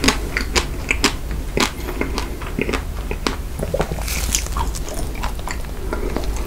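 Close-miked chewing of a mouthful of white chocolate: irregular clicks and wet mouth smacks, several a second.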